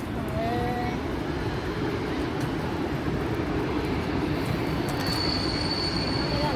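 Bird-feed vending machine's dispensing mechanism running steadily as it delivers a paid portion of feed into its chute, with a thin high whine joining about five seconds in.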